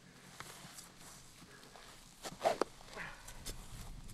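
A golf club swung at a ball off grass: one short, sharp strike about two and a half seconds in, with a brief grunt. A few faint clicks follow.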